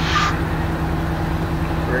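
Fire truck diesel engine idling with a steady low hum, a brief hiss at the very start.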